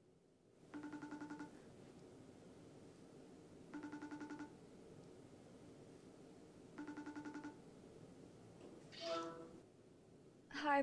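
Phone video-call ringback tone: three short fluttering rings about three seconds apart while the call waits to be answered, then a short falling chime near the end as it connects.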